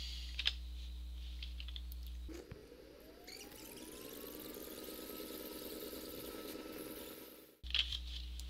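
A single mouse click over a steady low room hum. About two seconds in, an edited fast-forward stretch begins: a rising whine that levels off into a steady whirring, then cuts off abruptly near the end.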